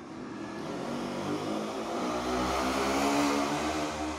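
A motor vehicle passing nearby, its engine growing steadily louder to a peak about three seconds in, then beginning to fade.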